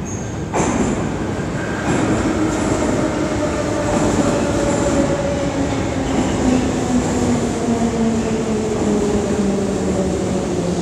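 An 81-540.3K metro train pulls into the platform. Its rumble grows loud about half a second in, and then its motor whine falls slowly in pitch as the train slows.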